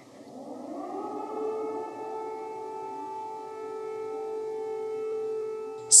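Air-raid siren winding up, rising in pitch over about a second and a half, then holding a steady wail.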